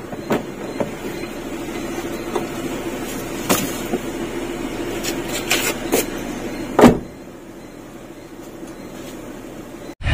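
Honda Brio's four-cylinder engine idling with the air conditioning on, a steady hum inside the cabin, while the driver's door is unlatched and swung open with a few clicks. Nearly seven seconds in the door shuts with a loud thump, and the hum drops to a quieter level.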